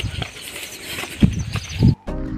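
Wind and rain on a phone microphone in a monsoon downpour, with two loud gusts buffeting it near the end.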